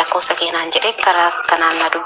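A person talking continuously in a recorded voice message played back from a phone; the voice sounds thin, with little low end.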